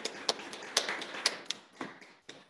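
A handful of irregular light taps and clicks, a few each second, with short gaps between them.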